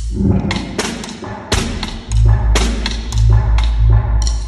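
Solo snare drum struck with sticks in sharp, irregularly spaced strokes, over an electronic backing track with deep, sustained bass pulses.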